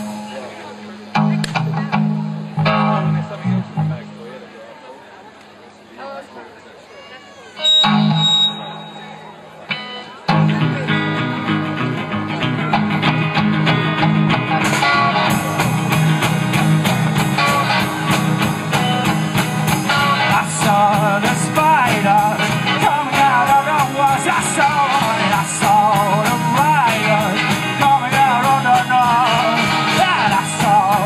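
Live rock band playing: electric guitar and bass start sparsely with pauses, the full band comes in about ten seconds in, and from about fifteen seconds a steady cymbal beat drives the song.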